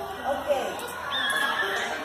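Young children's voices in a group, with a high, gliding call a little past the middle.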